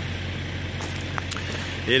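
Steady low engine hum under outdoor background noise, typical of an idling vehicle, with a few faint light clicks.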